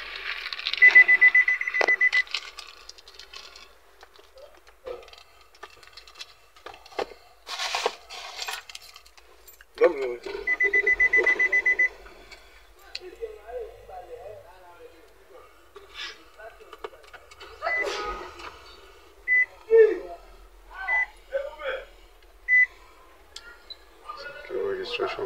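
Electronic warning beeps at one high pitch. There are two rapid runs of beeps lasting about a second and a half each, ten seconds apart, then a few single short beeps near the end.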